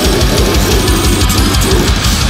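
Slamming brutal death metal song: distorted guitars and bass over fast, dense drumming with rapid kick-drum beats.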